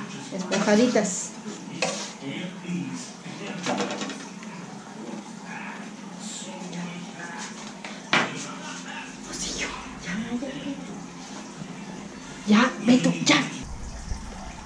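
Kitchen clatter of dishes and cooking utensils: scattered knocks, two sharper ones about two-thirds of the way through, with voices talking in bursts between them.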